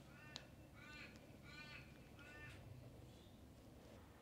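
A bird calling faintly four times in a row, about two-thirds of a second apart, with one light tap just before the second call.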